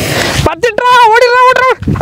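A short loud hiss as the firecracker's fuse is lit. It is followed by a man's long drawn-out shout, held on one pitch for more than a second, which starts again near the end.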